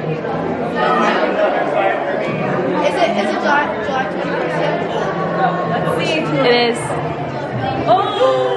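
Many overlapping voices chattering in a large hall.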